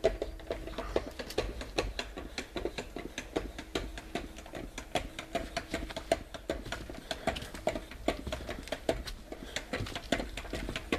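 Footsteps on paper floor protection, heard as dense, irregular crackles and ticks several times a second, over a low rumble.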